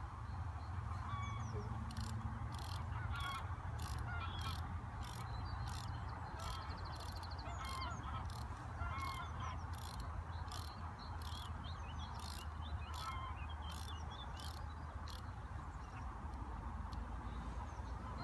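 Fishing reel clicking at a steady two to three clicks a second as the line is wound down and the drag tightened, starting about two seconds in and stopping a few seconds before the end.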